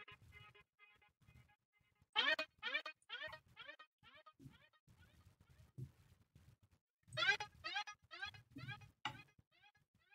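Short synth chords auditioned from the Heat Up 3 virtual instrument as notes are placed in a piano roll, twice: once about two seconds in and again about seven seconds in. Each chord is followed by quick repeats, about three a second, that fade away.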